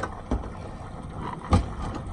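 Low, steady rumble aboard a fishing boat at sea, with a few sharp knocks; the loudest knock comes about one and a half seconds in.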